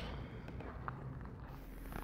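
Quiet outdoor background with a few soft footsteps; a higher hiss comes in about one and a half seconds in.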